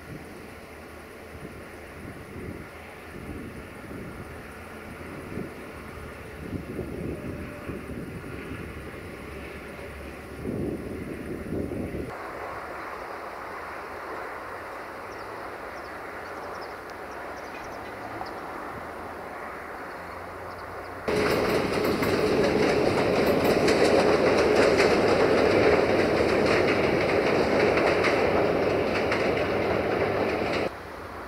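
Train running on rails with wheels clattering over rail joints. The sound cuts abruptly about twelve seconds in to a quieter, steadier rolling noise. About twenty-one seconds in it jumps to a much louder rolling noise with a steady hum.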